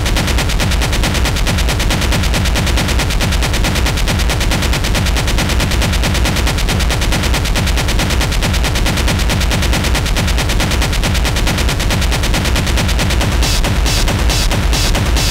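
Live industrial techno from drum machines and electronics: a loud, dense rapid-fire stream of distorted percussive hits, close to machine-gun fire, over a heavy bass. Near the end brighter, hissing hits come back in on top.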